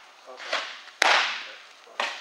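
A pitched softball smacks into a catcher's leather mitt about a second in: one sharp, loud pop that echoes briefly in the enclosed cage.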